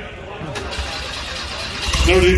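A car engine starting: a sharp click about half a second in, a stretch of cranking noise, then a low rumble that swells near the end as it runs.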